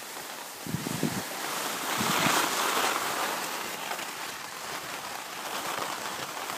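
Steady rushing hiss of skis sliding on groomed snow, mixed with wind on the microphone of a camera carried by a moving skier, swelling about two seconds in and then easing.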